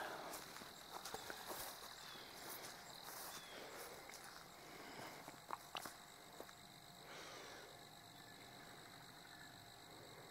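Quiet outdoor ambience with a faint, steady high-pitched insect drone, and a couple of light clicks about halfway through.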